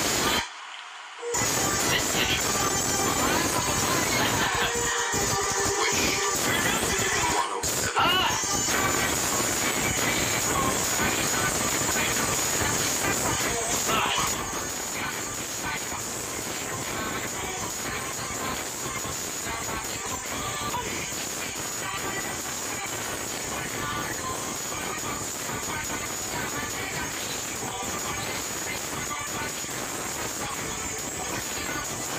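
Music from the Wish Bus performance video playing back, with a hiss over it. It drops out briefly just under a second in and grows quieter about halfway through.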